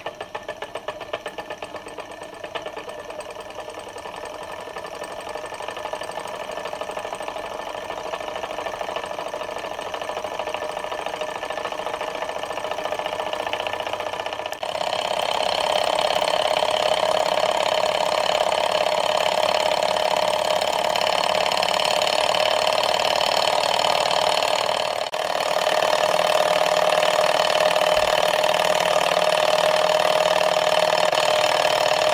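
Small kit-built hot-air Stirling engine, fired by a spirit burner and lubricated with graphite powder, running: its piston, connecting rods and flywheel tick at about four beats a second at first, then quicken into a steady, fast mechanical clatter as it comes up to speed.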